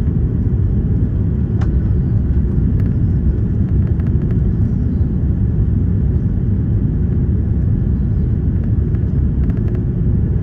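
Steady low rumble of a jet airliner's engines and rushing air, heard inside the passenger cabin as the plane descends on approach to land.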